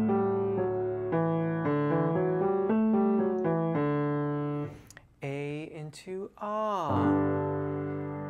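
Yamaha piano playing a stepping pattern of notes for a tenor agility warm-up. About five seconds in, the piano breaks off and a man's voice slides quickly up and down in pitch for about two seconds. A held piano chord then rings on to the end.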